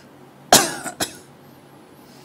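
A man coughing into a close microphone: one loud cough about half a second in, then a shorter second cough about a second in.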